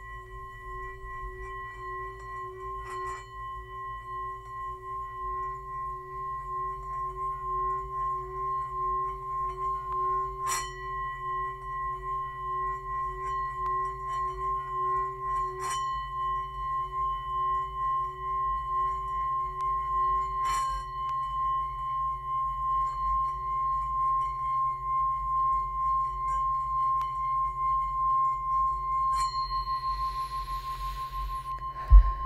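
Brass singing bowl rimmed with a wooden mallet, giving a sustained ringing tone that pulses as the mallet circles and slowly swells louder. A few faint clicks are heard along the way.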